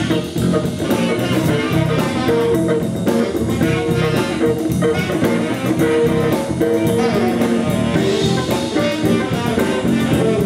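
Live blues band playing a funky instrumental passage: baritone saxophone, electric guitar, bass guitar and drum kit together.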